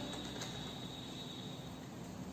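A pause in the speech: faint steady background hiss of the room, with a thin high steady tone.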